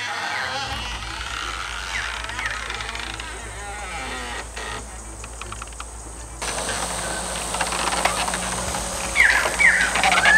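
Outdoor ambience with birds calling: a few short chirps a couple of seconds in and a louder run of calls near the end, over a steady low hum.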